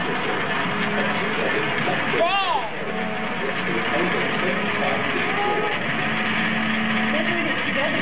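Coins rolling round and round a spiral coin funnel, a steady rolling rumble as they circle faster toward the centre hole, under the chatter of voices in a busy room.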